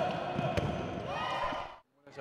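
Live court sound of handball play: a ball thuds once about a quarter of the way in, and a player's voice calls out with rising pitch shortly after. The sound cuts off abruptly just before the end.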